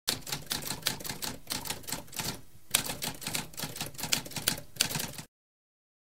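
Typewriter typing: a fast run of key clacks, with a short pause about two and a half seconds in, stopping just after five seconds in.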